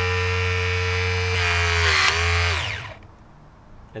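Burndy Patriot 18 V battery-powered hydraulic crimper's pump motor running as the jaws close. Its whine is steady, dips slightly in pitch about two seconds in, then winds down and stops about three seconds in. The freshly bled hydraulics close the jaws fully.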